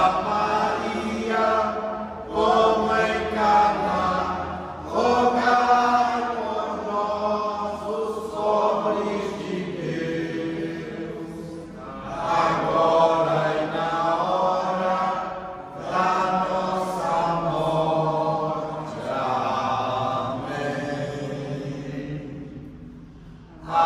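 A group of people reciting rosary prayers together in Portuguese, in a chant-like unison murmur, in phrases of a few seconds with short breaks between them.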